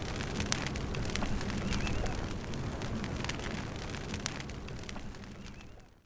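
Dry grass burning, with sharp crackles and pops scattered over a steady low rumble; the sound fades out near the end.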